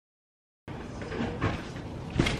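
Dead silence for about half a second, then quiet room sound with a couple of light knocks and rustles about a second in.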